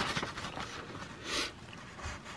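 A sheet of paper rustling as it is handled and curled in the hand, with a few small clicks near the start and a louder swish about a second and a half in.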